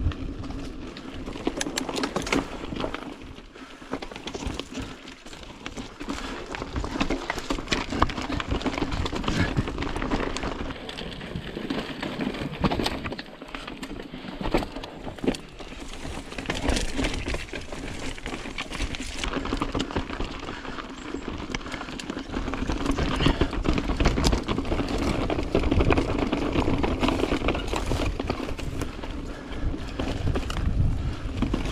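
Mountain bike rolling down a rocky, dusty trail: tyres crunching over dirt and loose stones, with a constant clatter of sharp knocks and rattles as the bike bounces over rocks.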